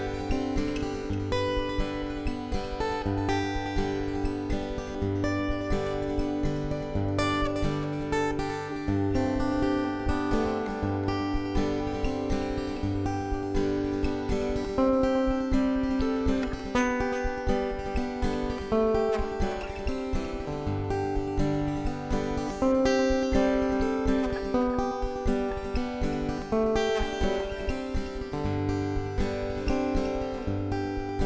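Solo acoustic guitar fingerpicked: plucked melody notes over a steady, repeating bass line, with no singing.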